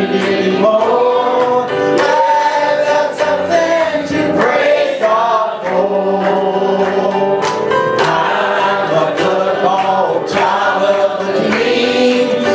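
Small mixed church choir of men and women singing a gospel song together, accompanied on an electric keyboard, with a man's voice leading on a microphone.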